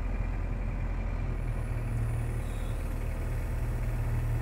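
Case excavator's diesel engine running steadily, a low hum heard from inside the cab while the machine is moved.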